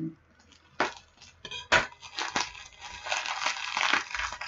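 Packaging being torn and crinkled by hand as a tightly wrapped parcel is unwrapped, with sharp snaps about a second in and just before two seconds, then a run of crinkling.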